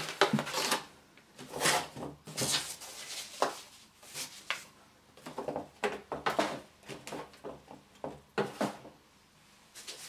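Packaging being handled: items lifted out of a cardboard motherboard box, and a motherboard in its plastic anti-static bag picked up and set down, giving irregular rustles, crinkles and light knocks.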